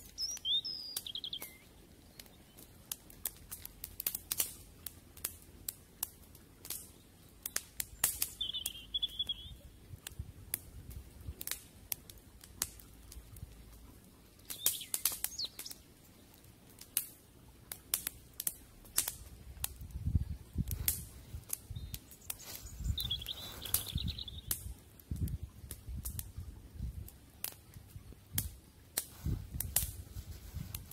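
Irregular crackling and sharp pops from a small wood fire in a stone ring, with a small bird chirping briefly three times: near the start, about nine seconds in, and about twenty-three seconds in. Low rumbling on the microphone from about twenty seconds in.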